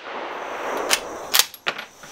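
Bolt-action rifle being handled just after a shot: a rustle of handling, then three sharp metallic clicks, one about a second in and two more in quick succession, as the bolt is worked to extract the spent case.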